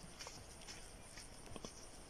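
Very quiet room tone with a few faint, scattered ticks.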